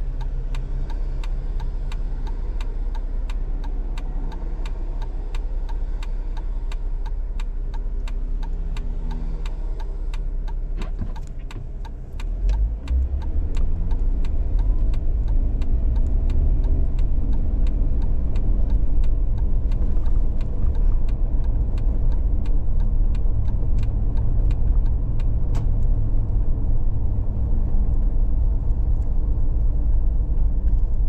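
Car engine idling at a stop, then about twelve seconds in pulling away and driving on, the low rumble of engine and road noise growing louder and staying up. Faint, regular ticking runs through.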